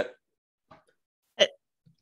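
The last syllable of a spoken question, then near silence broken about one and a half seconds in by a single brief vocal sound from a participant on a video call.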